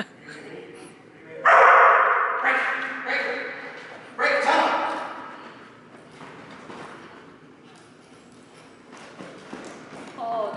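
A dog barking, about four sharp barks in the first half, the first the loudest, each echoing in a large hall.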